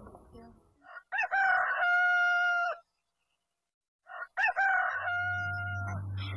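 A rooster crowing twice, each crow rising and then holding a long level note, with about a second of silence between the two.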